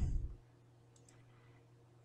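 A faint computer mouse click, a quick tick about a second in, amid near silence.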